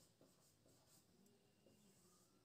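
Very faint strokes of a marker writing on a whiteboard, with a few brief thin squeaks.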